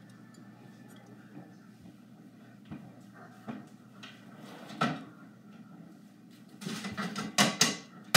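Kitchen handling sounds of dishes and a cupboard: a few faint, scattered knocks, then a louder run of clattering knocks near the end.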